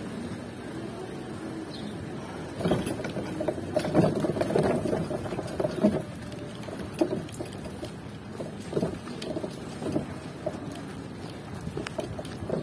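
Irregular rattling, knocking and rustling while riding a bicycle pedicab over a concrete street, picked up by a phone riding in a sling bag. The clatter is busiest from about two and a half to six seconds in, then turns sparser.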